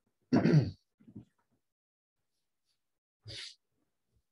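A man clearing his throat once, a short voiced burst about half a second in, then a brief breathy puff near the end.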